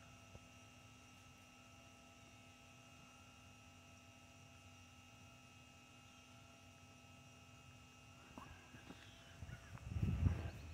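Near silence: a faint, steady outdoor background hum made of a few thin unchanging tones, with some faint rustling near the end.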